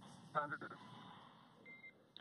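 Faint hiss of an open air-to-ground radio channel, with a brief voice fragment about half a second in and a short high beep near the end.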